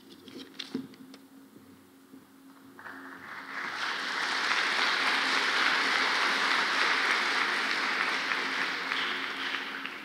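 A large audience applauding, the clapping swelling in about three seconds in, holding steady, and fading away near the end. A faint steady hum runs underneath.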